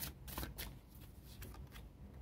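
Tarot cards shuffled by hand, quietly: a few short rustling strokes bunched near the start and a few more after the middle.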